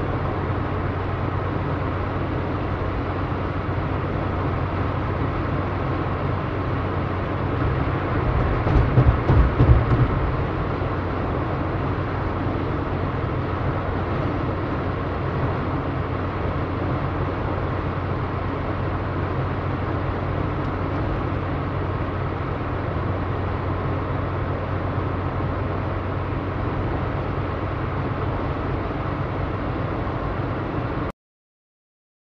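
Steady road and engine noise of a moving car, heard from inside the cabin, with a constant low hum. A louder low rumble swells about eight to ten seconds in.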